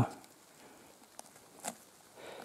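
Faint ticks of a knife trimming a picked mushroom's stem, two light clicks in the second half over quiet forest background.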